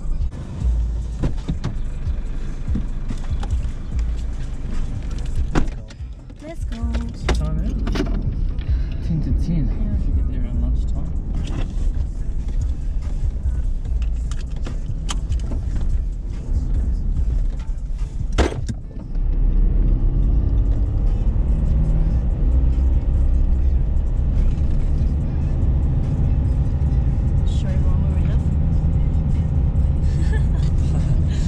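Car engine and road rumble heard from inside the cabin of a moving car, with a few sharp clicks and knocks in the first twenty seconds. About nineteen seconds in, the rumble becomes louder and steadier.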